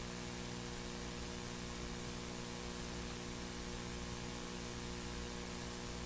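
Steady electrical mains hum: a low, even buzz with many steady overtones over a faint hiss. Nothing else is heard.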